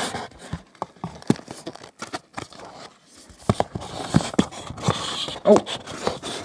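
Scattered clicks, taps and light scrapes of a CD box set's card and plastic packaging being handled, with a rustle about four seconds in, as a black sleeve is turned and a CD in its plastic tray comes into view.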